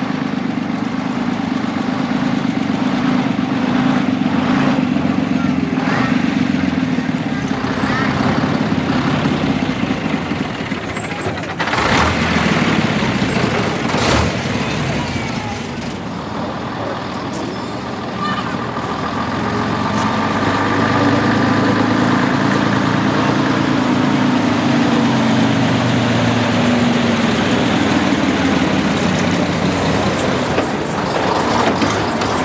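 Vintage AEC lorry engines running as the lorries move slowly past. A steady engine note fills the first third, with brief sharp noises around the middle. A second lorry's engine rises and then falls in pitch in the second half.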